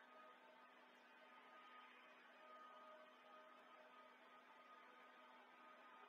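Near silence: faint, steady room tone with a low hum and hiss.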